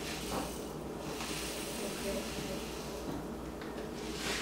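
Flax seeds poured from a plastic bag into a coffee grinder's cup: a soft, steady hiss of tiny seeds falling, which stops shortly before the end.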